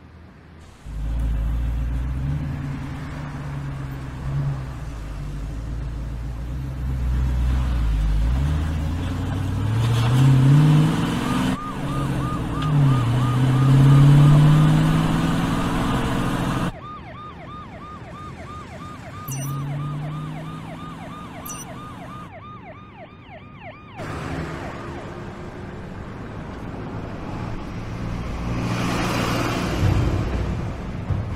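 A car engine revving and pulling away, its pitch gliding up and down. From about eleven seconds in it is joined by a fast-warbling emergency-vehicle siren, which stops about twenty-three seconds in. The sound cuts off abruptly twice.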